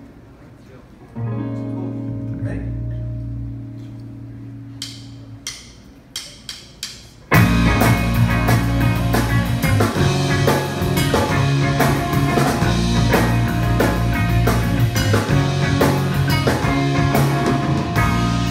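Live rock band starting a song: a guitar chord strummed and left ringing, a few sharp clicks, then about seven seconds in the full band comes in loud, with drum kit, bass and electric guitars.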